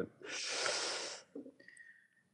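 A person breathing out into a close microphone: one noisy exhale about a second long, without voice.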